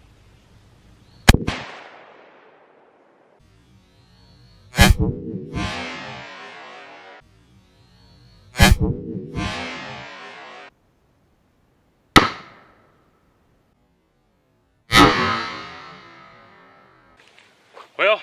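Marlin Model 1895 lever-action rifle in .45-70 Government firing hot Grizzly +P 405-grain hard-cast loads: five loud, sharp shots about three to four seconds apart, each followed by a fading echo.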